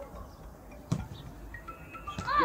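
A football kicked once, a single sharp thud about a second in, over faint background voices on the pitch.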